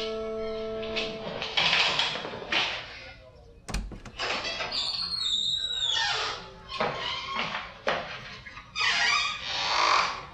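Background music, with a wooden door being opened: a sharp thump a little before four seconds in, then a high, falling squeak.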